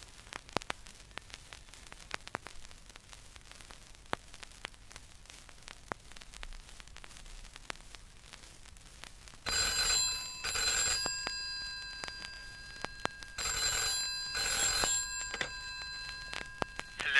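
Clicks and crackle of a worn vinyl record in a quiet groove. About halfway through, a telephone bell rings twice in the double-ring pattern, two short rings then a pause.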